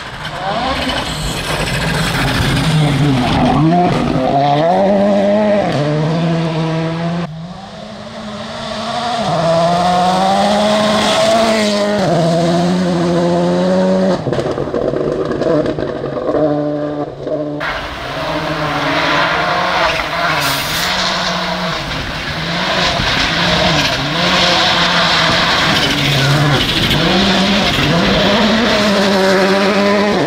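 Rally car engines at high revs on gravel stages, the pitch climbing and dropping again and again as the gears change. The sound cuts off suddenly about seven seconds in and again near eighteen seconds as one pass gives way to the next.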